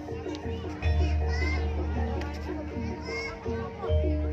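Javanese gamelan accompaniment for a buto dance: a fast repeating pattern of struck metal keys over a deep low tone that drops out briefly near the end. Children shout and chatter in the crowd over the music.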